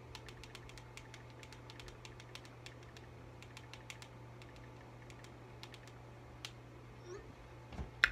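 Rapid, irregular tapping of typing on a smartphone's touchscreen keyboard, thinning out after about four and a half seconds, over a faint steady low hum.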